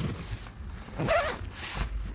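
Suitcase zipper pulled open along the soft case's edge. The zipping starts about a second in and lasts just under a second.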